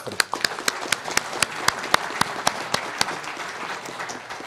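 A large hall audience applauding. One person's claps, close to the microphone, stand out as a steady run of about four a second and fade towards the end.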